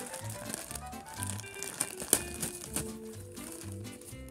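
Thin clear plastic bag crinkling as it is pulled off a toy horse figurine, with one louder crackle about halfway through. Background music with a steady beat plays throughout.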